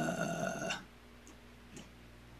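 A person's drawn-out hesitation sound, a held 'uhh', with a slightly falling pitch, ending under a second in; after that only a faint low room hum.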